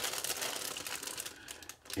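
Clear plastic bags crinkling as hands rummage through a model kit's bagged plastic runners, an irregular crackle that dies away just before the end.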